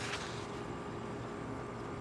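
Steady background hum and hiss with a faint steady tone through it; nothing starts or stops.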